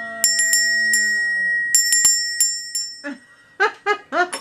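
Metal handbell shaken by hand, its clapper striking about seven times in the first three seconds, each strike ringing on. It is rung as a dinner bell to call people to dinner. A voice follows near the end.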